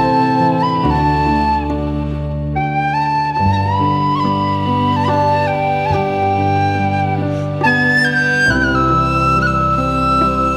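A slow Irish air played on a wooden whistle, the melody gliding between long held notes over sustained low chords.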